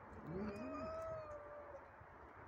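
Frightened cat giving one long, drawn-out yowl of about a second and a half that opens with a short low rising note, a fearful warning cry made with its back arched.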